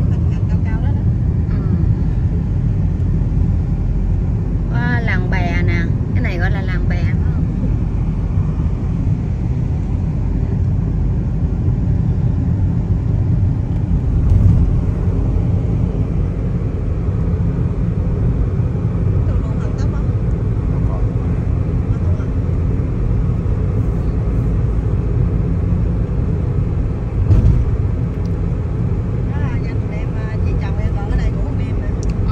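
Steady road and engine noise heard from inside a moving car's cabin, mostly deep rumble. A voice comes through briefly about five seconds in.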